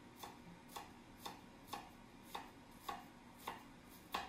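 Kitchen knife tapping down through a red onion onto a wooden cutting board, quiet regular knocks about twice a second. The tip is making small notches in the onion without cutting past its side, so it holds together for dicing.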